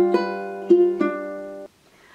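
Ukulele being fingerpicked: single notes plucked one after another and left ringing over each other, fading until the sound cuts off abruptly near the end.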